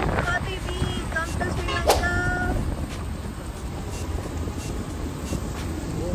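Steady low road and engine rumble of a moving vehicle, heard from inside. A few brief pitched sounds come in the first two and a half seconds.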